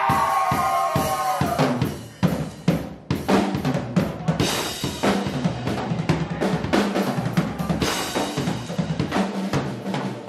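Live rock drum kit played hard: rolls and fills on snare and bass drum, with cymbal crashes about four seconds in and again near eight seconds.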